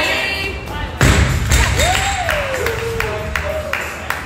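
A loaded barbell with black bumper plates dropped onto the rubber gym floor about a second in: one heavy thud, then a few lighter knocks as it settles. A voice calls out once over it with one long call that rises and then falls.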